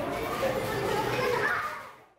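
A group of schoolchildren chattering and calling out together as they play in a classroom; the voices fade out near the end.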